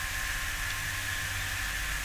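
Pause in speech: a steady background hiss with a faint low hum and a few thin steady tones.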